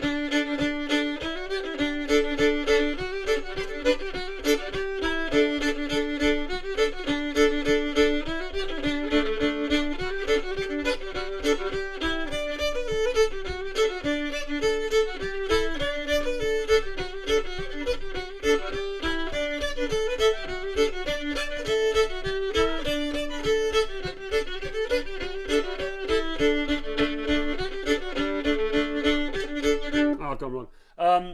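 Fiddle playing an English triple-time (3/2) hornpipe: a steady stream of quick, even notes, often two strings sounding together.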